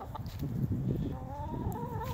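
A hen making a long, steady, drawn-out call that starts about halfway in, over a low rumble of wind on the microphone.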